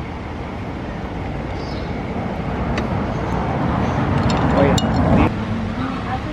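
Street traffic: a car going by on a narrow street, its rumble growing louder over a few seconds and cutting off about five seconds in.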